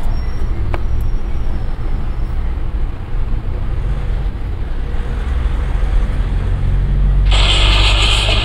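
A steady low rumble, with a loud breathy hiss close to a clip-on microphone near the end that lasts about two seconds: a breath that the microphone picks up very loudly.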